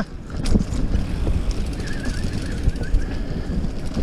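Wind buffeting the microphone of a camera on a mountain bike rolling along a dirt trail, with the steady rumble of the tyres and ride over rough ground and a few short rattling clicks from the bike.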